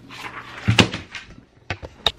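A sheet of paper being handled: rustling that builds up, a loud knock just under a second in, then a few sharp clicks near the end.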